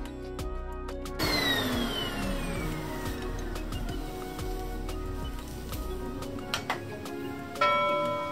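Background music, with editing sound effects over it: a falling swoosh about a second in, a couple of clicks later on, and a bright chime near the end.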